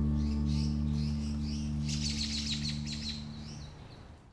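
Closing background music, a held low chord fading out toward the end, with birds chirping over it and a brief busy flurry of chirps about two seconds in.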